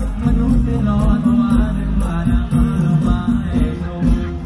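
Live band music played loudly through a PA, with a steady beat and a sung melody over it.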